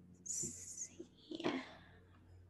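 Faint breathy sounds from a person at the microphone, a soft hiss and then a brief whispered exhale, over a low steady hum.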